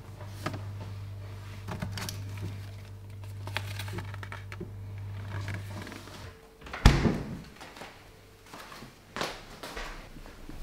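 Refrigerator with its door open: a low steady hum for about the first six seconds, with small rustles and clicks as film boxes are handled on the door shelves. Then a single loud thud about seven seconds in, the fridge door shutting.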